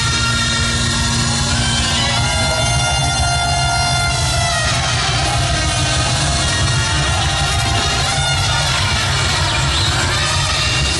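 Reggae band playing live and loud through a PA: electric guitar, bass and drums, with held chords most prominent between about two and five seconds in.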